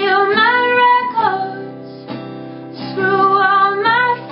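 A woman singing over an acoustic guitar: two sung phrases, the first in the opening second and the second near the end, over strummed chords.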